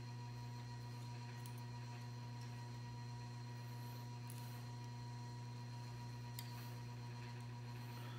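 Quiet room tone dominated by a steady low electrical hum, with a few faint soft ticks.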